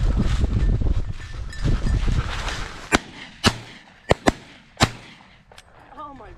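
Footsteps through dry grass with wind on the microphone, then about five sharp shotgun shots in quick succession from about halfway in, fired at a flushed pheasant.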